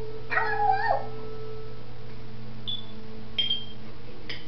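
African grey parrot calling: one short call, under a second long, whose pitch rises and falls, then two brief high chirps in the second half.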